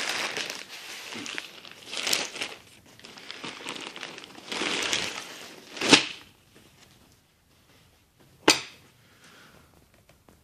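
Plastic wrapping rustling and crinkling as jeans are pulled out of a pressed clothing bale and handled. Then come two sharp slaps, about six seconds in and again two and a half seconds later.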